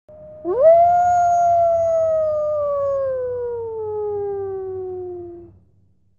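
A single long wolf howl: it rises quickly to its peak about half a second in, then slides slowly down in pitch for about five seconds before fading out.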